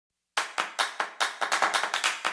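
Hand clapping, starting suddenly about a third of a second in and running on as quick, uneven claps at roughly five a second.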